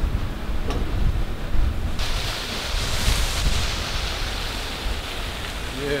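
Wind buffeting the microphone: a loud, uneven rumbling rush, with a brighter hiss joining about two seconds in.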